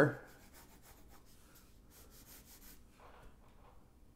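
Faint scratching of a pencil sketching lines on drawing paper, a run of short strokes that thins out toward the end.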